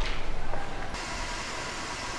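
Footsteps on a hard hallway floor, a few faint steps in the first second, then a steady hiss.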